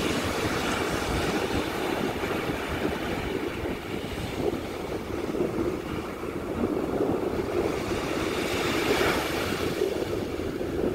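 Ocean surf breaking and washing ashore, a steady rushing noise with a low rumble of wind on the microphone, swelling slightly near the end.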